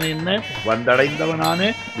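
A man's voice narrating in Tamil, with long held tones that glide upward at their ends.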